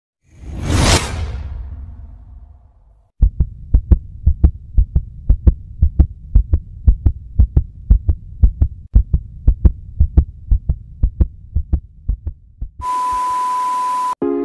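Intro sound effects: a swelling whoosh that peaks about a second in, then a steady heartbeat-style thumping, about three beats a second. Near the end it cuts to a burst of static hiss with a steady electronic beep.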